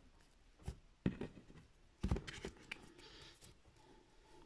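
A deck of tarot cards being handled: a few quiet taps and clicks and a brief papery rustle about three seconds in.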